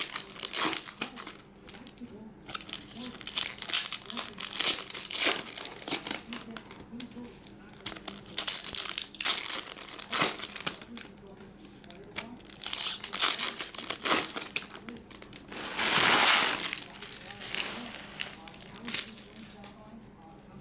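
Foil wrappers of Topps Chrome Platinum baseball card packs being torn open and crinkled by hand, in repeated bursts of crackling, the loudest and longest about sixteen seconds in. A faint steady hum runs underneath.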